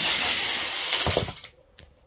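Five die-cast toy cars rolling fast down an orange plastic Hot Wheels track, a steady rushing rattle. About a second in there is a short clatter as they reach the finish gate, and then the sound fades quickly.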